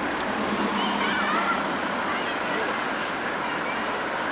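Outdoor street ambience: a steady wash of wind and traffic-like noise with faint, distant voices of people.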